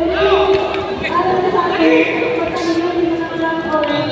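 Spectators' voices calling out in drawn-out, chant-like notes, one call after another, over general crowd noise.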